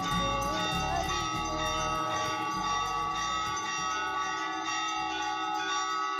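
Temple bells ringing steadily through an aarti, many overlapping ringing tones sustained together.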